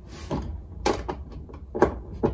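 Three sharp clicks and knocks of hand tools on a floodlight's mounting hardware and wiring, spaced irregularly about half a second to a second apart, over a low steady hum.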